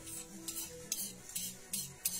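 Stone rocker (uña) rocked back and forth on a batán grinding slab, crushing ají: a gritty stone-on-stone scrape with each rock, about four strokes in two seconds.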